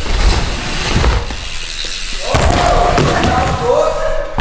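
BMX bike riding wooden skatepark ramps: low thumps and rumble from the tyres and frame, under heavy wind rush on the moving camera's microphone. About two seconds in, a voice calls out in drawn-out shouts.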